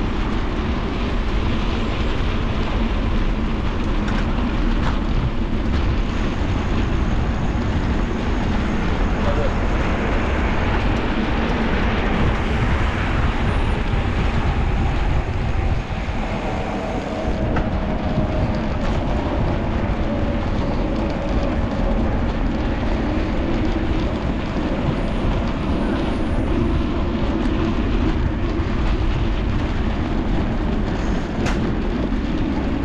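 Steady wind rush and tyre rolling noise at a handlebar-mounted action camera on a moving bicycle. A faint tone slides slowly downward in the second half.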